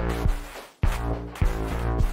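An electronic beat with a kick drum and a low bass synth, in punchy notes that start sharply and fade between hits.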